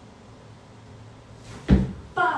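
A single dull, heavy thump near the end, over quiet room tone.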